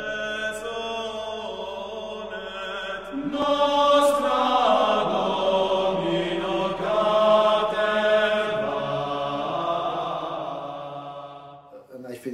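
A vocal ensemble singing chant in long held notes over a sustained low drone. It grows fuller and louder about three seconds in, then fades out just before the end.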